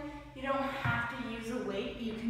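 A woman talking, with a short dull thump about a second in as a dumbbell is set down on the rubber gym floor.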